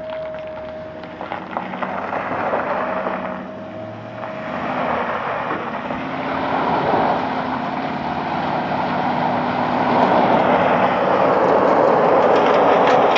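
Service truck's engine labouring hard under load while towing a heavy semi on a tow line, its rear tyres spinning and throwing gravel; the noise builds and grows louder through the last few seconds.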